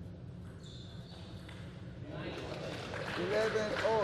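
Table tennis rally: the ball clicking off the table and bats, followed in the second half by spectators cheering and clapping, with a voice shouting about three seconds in as the point ends.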